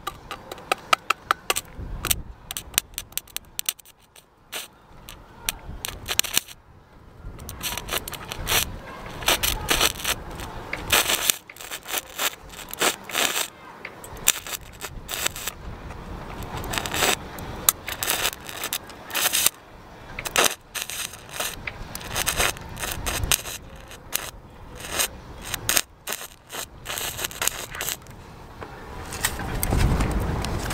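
Stick-welding arc from a thin 1.6 mm stainless steel rod on a stainless steel plate, run off two car batteries wired in series, crackling and sputtering unevenly. Rapid ticking in the first couple of seconds as the rod is struck. The arc drops out briefly a few times before settling into a continuous crackle.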